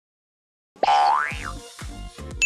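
Silence for most of the first second, then an upbeat advertising jingle kicks in: a cartoon sound effect slides up in pitch and back down over a steady drum beat.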